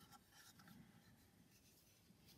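Near silence, with faint rubbing and handling of a small metal star cutter on soft porcelain clay and cloth.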